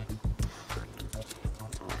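Wax paper crackling and rustling in a quick run of short crinkles as it is folded by hand around a stack of trading cards.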